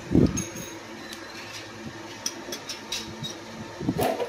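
Steady low hum of an electric motor. A loud thump comes just after the start, and a few light clicks follow about halfway through.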